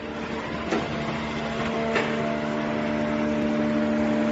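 Automatic wire soldering machine running with a steady hum, with two sharp clicks, one under a second in and one about two seconds in.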